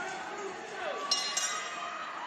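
A metallic bell struck about a second in and again a moment later, ringing on over a hubbub of crowd noise: the bell signalling the start of the second round of an MMA fight.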